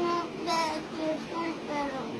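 A young boy's high-pitched voice in several short, drawn-out phrases.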